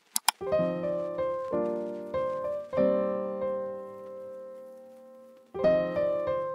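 Background piano music: chords struck about every half second to second, each ringing and fading. Then one chord is held and dies away slowly over nearly three seconds before the playing resumes near the end. It opens with two sharp clicks.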